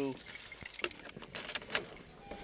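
A bunch of car keys jangling on their ring, a string of small metallic clicks and jingles.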